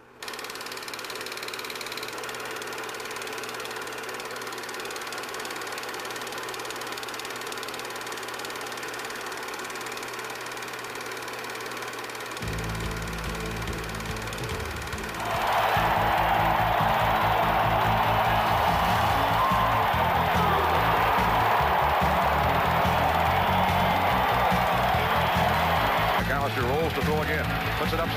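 A Kodak Analyst film projector running with a steady mechanical whir. About twelve seconds in, music with a low beat comes in, and a few seconds later a loud, steady rush of noise joins it until near the end.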